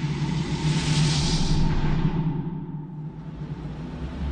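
Title-sequence sound effects: a low steady rumble under a swell of rushing whoosh that peaks about a second in and then fades away.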